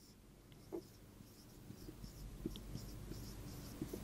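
Marker pen writing on a whiteboard: faint scratching strokes with a few small ticks, starting about a second and a half in.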